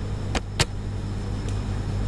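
Computer keyboard keystrokes: three quick key clicks in the first second and one faint click later, over a steady low hum.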